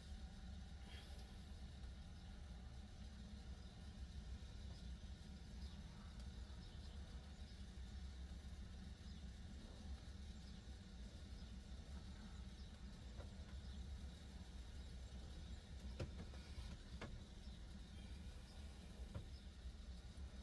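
Near silence: faint room tone with a steady low hum and a few faint clicks late on.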